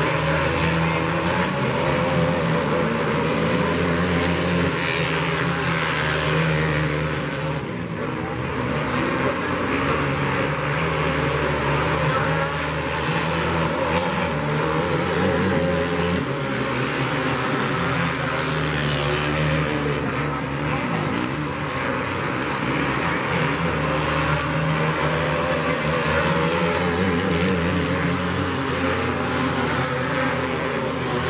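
A pack of winged outlaw karts racing on a dirt oval, several small engines running hard together. The sound swells and fades a little as the field circles, with brief dips about eight seconds in and again past twenty seconds.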